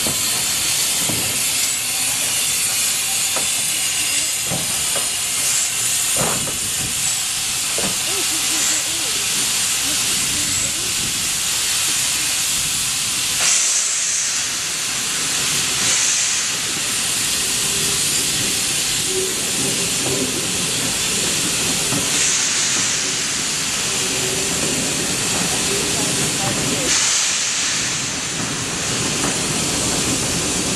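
Steam locomotive, GWR pannier tank No. 9600, hissing steam steadily, with several stronger surges of hiss.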